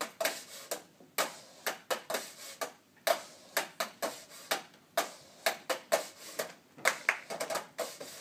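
Rhythmic hand percussion: claps and taps in a repeating pattern of sharp strikes, about three a second.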